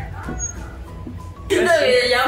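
Background music under faint voices, then a loud voice starts suddenly about one and a half seconds in.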